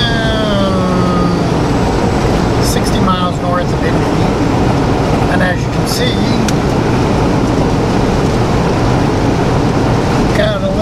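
Semi-truck cab at highway speed: steady engine and road noise, with a deep rumble underneath. A few short voice-like sounds break through briefly.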